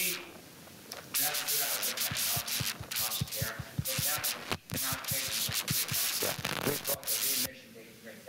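A man's lecturing voice, largely buried under loud scratchy rubbing noise, the sound of a clip-on microphone rubbing against clothing as he moves and gestures. The scraping comes in rapid irregular strokes and drops away briefly near the end.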